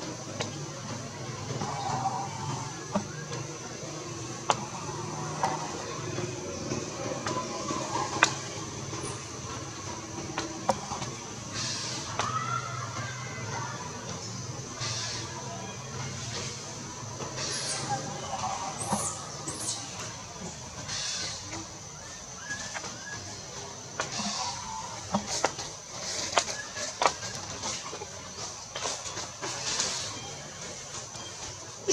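Outdoor tree-canopy ambience with a steady high-pitched insect drone, scattered clicks and rustles from branches and leaves, and a few brief faint vocal sounds.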